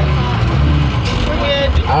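Short school bus engine droning steadily under load, heard from inside the cab, as the bus labours uphill with the accelerator held down; the bus has engine trouble and is struggling to climb.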